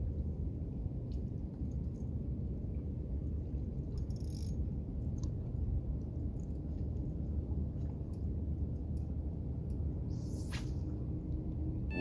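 Steady low outdoor rumble with a few faint ticks, and a brief hiss about four seconds in and again near the end.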